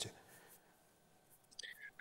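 Near silence between two speakers, with a faint, brief vocal sound near the end just before the next voice begins.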